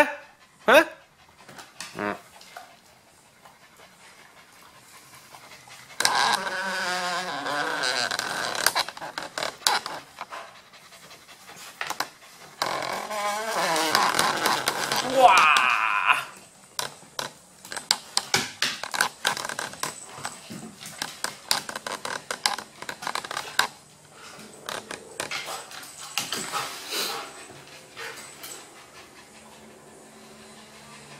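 Dogs (a Maltese, a golden retriever and a husky–German shepherd mix) play-fighting on a wooden floor, with two sharp vocal outbursts at the start and two longer stretches of wavering play growls. These are followed by many quick clicks and scuffles of claws scrabbling on the floorboards.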